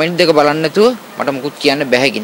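A man speaking, with no other sound standing out.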